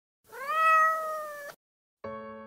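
Kitten giving one long, high meow that rises at the start, holds steady, and cuts off suddenly after about a second.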